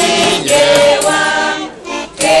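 A group of men and women singing a folk song together, with button-accordion accompaniment. The singing breaks off briefly between lines near the end.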